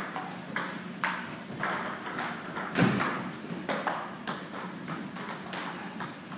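Table tennis rally: the plastic ball clicking off paddles and the table about twice a second, each hit ringing briefly in the hall, with one harder hit about three seconds in.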